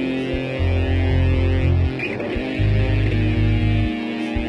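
Band music: guitar over a low, pulsing bass line, with a short break about two seconds in.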